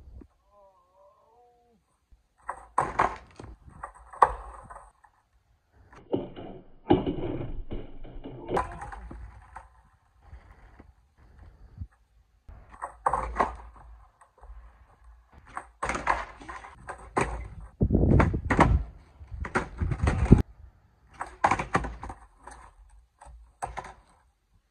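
A skateboard thudding and clattering on a concrete driveway, in clusters of sharp knocks and thuds with some longer stretches of low rolling rumble.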